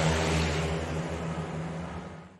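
A low, steady drone fading out gradually: the tail of the closing logo sound sting.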